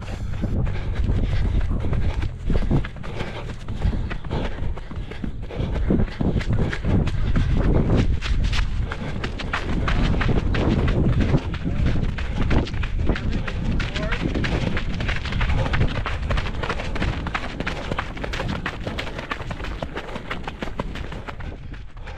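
Running footfalls on a dirt and gravel road, picked up close by a camera carried on a running person, as a fast, uneven stream of crunching steps over a low wind rumble on the microphone.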